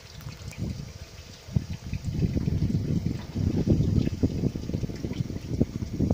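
Wind buffeting the microphone: quieter at first, then a gust picks up about a second and a half in and the rumble stays loud and uneven.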